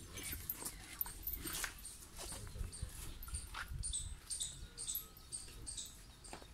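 Faint farmyard background: many short, high chirps of small birds, with a few brief animal cries and a low rumble underneath.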